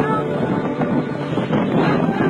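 Muddy flash-flood water pouring over a desert cliff edge in a broad waterfall, a loud steady rushing, with wind buffeting the microphone.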